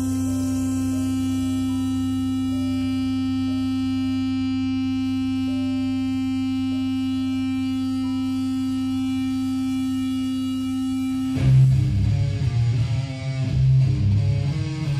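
Live metal band: a steady held drone with faint higher notes changing above it, then, about eleven seconds in, distorted electric guitar, bass guitar and drums come in loud together.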